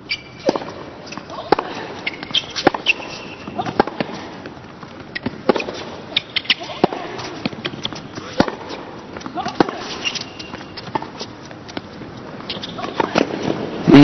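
A tennis ball struck back and forth by rackets in a hard-court rally, a sharp pock about once a second from the serve onward. Near the end the crowd noise swells as the point is won.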